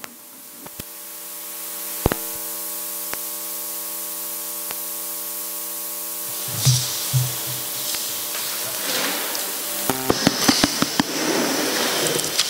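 Microphone being handled and fitted onto a stand, giving scattered clicks, a few low bumps about halfway through and a quick run of clicks near the end. Behind this, a steady hiss and a hum of several steady tones from the microphone and PA line.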